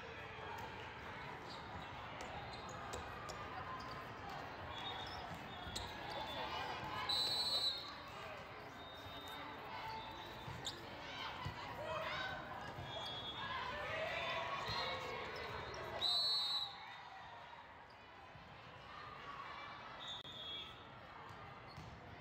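Volleyball tournament hall din: voices of players and spectators echoing in a large hall, with balls being struck and bouncing. Two loud referee whistle blasts, about 7 and 16 seconds in, plus fainter short whistles from other courts.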